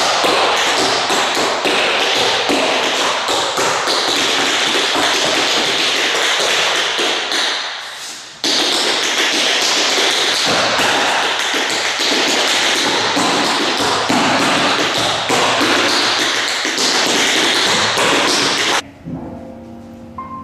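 Tap shoes striking a wooden floor in a fast, continuous tap-dance routine, with a brief lull about eight seconds in. The tapping stops near the end.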